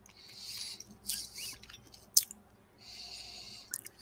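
Breathing and mouth sounds of a person tasting whisky, close to the microphone: three soft, hissy breaths, small lip or tongue clicks, and one sharper click a little after two seconds.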